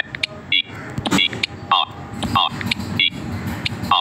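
Android TalkBack screen reader's synthetic voice speaking single letters (E, R) as keys on the on-screen keyboard are touched and typed. Each letter comes with a short electronic chirp, repeating roughly every half second or so.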